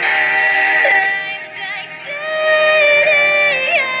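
Electronic pop song: a held synth chord fades down over the first two seconds, then a female voice comes in singing a held, sliding melody line.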